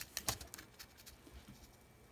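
Quiet room with a few faint clicks in the first half-second.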